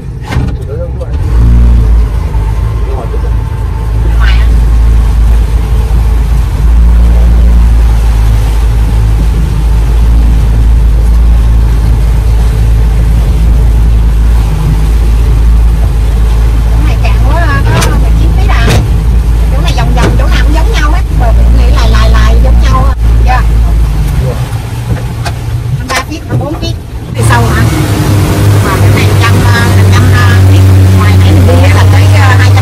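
Small fishing boat's engine running steadily underway, heard loud as a low, continuous rumble from inside the cabin; the sound changes near the end.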